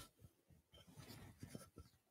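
Faint rustling of paper: the pages of a book being handled, in a run of short soft scrapes with a small knock at the start.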